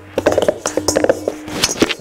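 Hands working an oiled ball of pizza dough around the inside of a stainless steel mixing bowl: a quick run of small scrapes and clicks against the metal, over a faint steady low tone.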